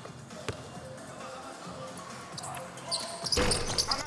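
A basketball bounced twice on an indoor court as a player sets up a free throw, over faint background music. Near the end a short burst of broad noise rises.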